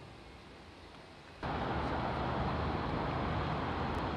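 Steady traffic noise from road vehicles, cutting in suddenly about a second and a half in and running on at an even level after quiet canal-side ambience.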